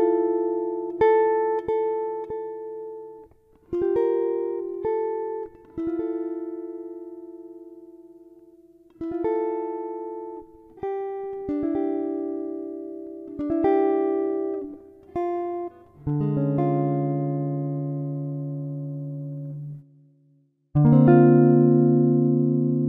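Solo jazz guitar playing a chord-melody arrangement in free rubato time: chords and tone clusters are plucked and left to ring out, each dying away before the next. Lower, fuller chords ring for longer near the end, after a brief pause.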